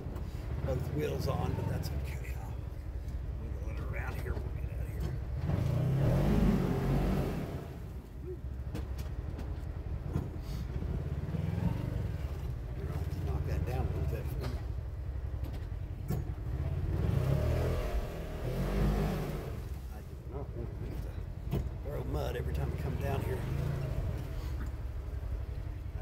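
Side-by-side UTV engine running as it is driven over a rough trail, the engine note swelling and easing several times as the throttle is worked.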